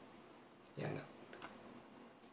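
A pause in a man's speech: a short, quiet spoken "ya" about a second in, followed by a faint click. Otherwise near silence.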